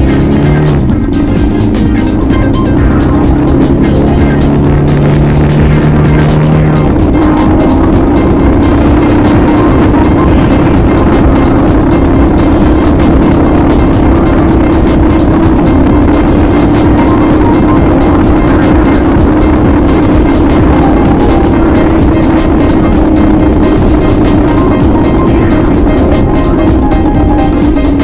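Yamaha XT660Z Ténéré single-cylinder engine pulling the bike along a gravel track, heard loud from a bike-mounted camera: the pitch rises just after the start, holds steady, then shifts about seven seconds in and runs on steadily, with music playing over it.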